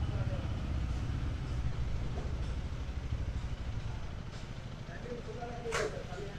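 Bajaj Pulsar N160's single-cylinder engine running at low revs as the motorcycle rolls along slowly, a steady low thrum.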